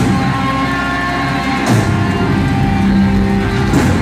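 Live rock band playing loud, with electric guitars held over a drum kit, and cymbal crashes near the start, in the middle and near the end.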